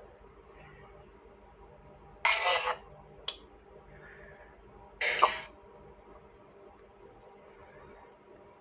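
A man clearing his throat or coughing twice: two short, rough bursts about three seconds apart, with a small click between them over a faint background hiss.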